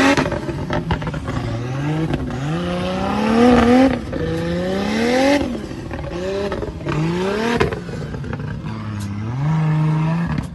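Off-road buggy engine revving in repeated bursts, about six times: each time the pitch climbs for around a second, then the throttle is let off and it drops back, as the buggy drives through mud.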